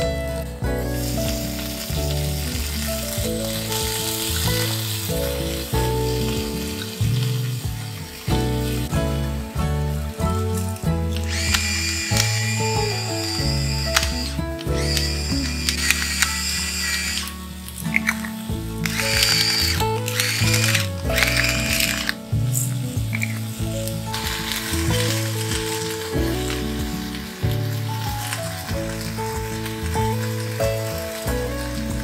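Background music over the sizzle of an egg and vegetables frying in a three-section nonstick brunch pan, the sizzle coming and going in patches.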